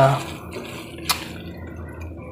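A nonstick frying pan of macaroni in tomato and cheese sauce with a spatula in it, giving one sharp, wet click about a second in against a low steady background.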